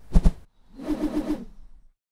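Editing sound effects for an animated transition: a brief thump at the start, then a wavering tone lasting about a second that fades out.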